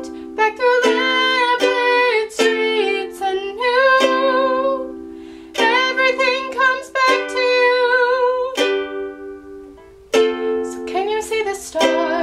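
Ukulele strummed in chords with a voice singing a pop melody over it. Late on, one chord is left ringing and fading for about a second before the strumming starts again.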